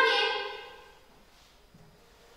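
A woman's voice holding a drawn-out syllable that fades out within the first half second, then near silence: quiet room tone.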